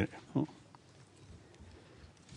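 A person's two short interjections, a 'huh' and an 'oh', within the first half second, then quiet room noise.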